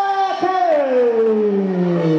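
A voice holding one long drawn-out note, which then slides steadily down in pitch for about the last second and a half.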